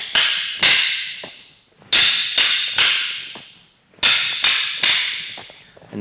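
Wooden short sticks (bahng mahng ee) clacking against each other in a partner drill: three sets of three quick strikes about half a second apart, each set a three-count with a short pause between sets. Each clack is sharp and rings out.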